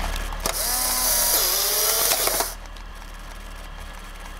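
A click, then a small electric motor in a vintage handheld gadget whirs for about two seconds, its pitch sinking partway through, and stops with a short clatter.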